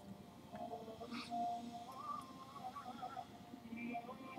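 A faint melody of wandering pitched notes, with one short click or rustle about a second in.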